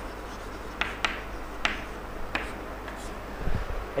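Chalk writing on a chalkboard: about five short, sharp taps and scratches of the chalk, spaced unevenly.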